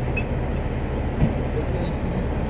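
Heavy-duty tow truck's engine idling with a steady low rumble, and a single knock about a second in.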